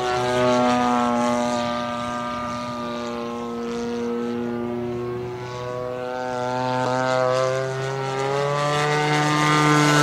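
Model aircraft engine and propeller of a radio-controlled Fokker D8 biplane droning overhead in flight. The drone dips slightly in pitch and loudness mid-way, then rises again near the end.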